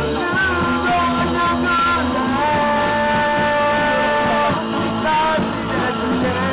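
A song with a singer, guitar and bass; a long note is held through the middle.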